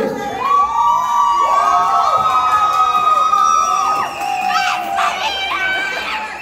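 A crowd of supporters cheering and screaming, with several long high-pitched screams held for a few seconds, then shorter shouts near the end.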